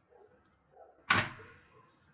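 A front door pulled shut with a single sharp bang about a second in.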